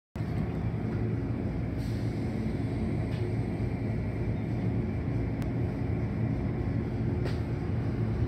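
Automatic car wash tunnel running: the hanging cloth curtain swinging and water spraying make a steady low rumble through the viewing-window glass, with a few faint knocks.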